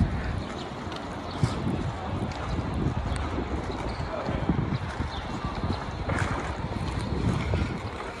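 Open-air city plaza ambience with wind rumbling on the microphone and faint voices of people nearby.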